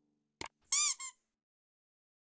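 Subscribe-button animation sound effect: a sharp click, then a short, high, squeaky chirp in two parts, each rising and falling in pitch.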